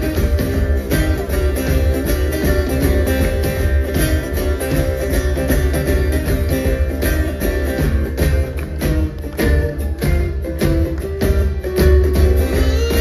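Live band playing an instrumental passage: strummed acoustic guitars over a steady drum beat.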